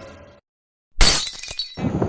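Edited-in glass-shattering sound effect: a sudden loud crash about a second in, after a short silent gap, with high tinkling fragments that die away within about a second. A sound fades out in the first half second, before the gap.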